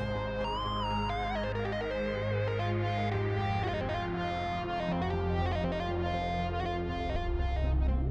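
Roland JUNO-X synthesizer playing a layered sound: low sustained bass notes under short notes that change in steps, with a tone that sweeps up and back down over the first few seconds.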